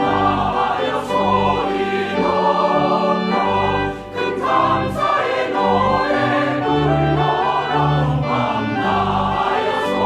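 Mixed church choir singing an anthem in full harmony, with low sustained notes underneath. There is a brief drop in loudness about four seconds in.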